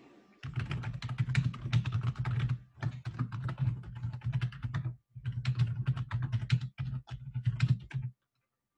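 Fast typing on a computer keyboard: quick runs of keystrokes broken by a few short pauses.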